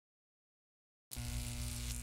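A low steady hum with a faint hiss above it, starting abruptly about a second in out of dead silence.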